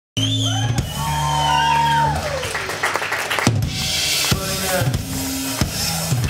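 Punk rock band playing live: electric guitars holding and sliding notes, with sharp drum hits coming in about halfway through.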